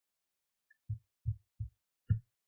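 Three short, low, dull thumps about a third of a second apart in the second half, with near silence before them.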